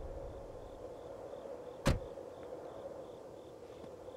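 Night crickets chirping in a faint, steady pulse, with a film-score tail fading out at the start. About two seconds in comes a single sharp thud, a car door shutting.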